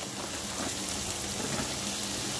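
Ridge gourd pieces sizzling steadily in hot oil and fried spice masala in a kadai as they are tipped into the pan.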